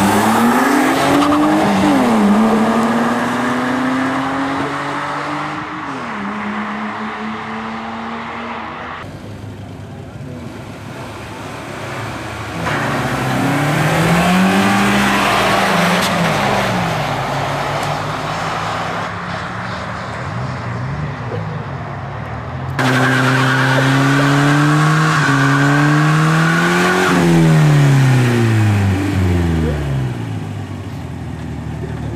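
Cars accelerating hard from a standing start, engines revving up through the gears with clear drops at each shift, then fading into the distance. After abrupt cuts comes more hard revving, and in the last seconds a car engine is revved high and falls away again during a burnout.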